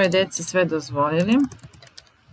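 A quick run of computer keyboard key clicks near the end, after a woman's voice.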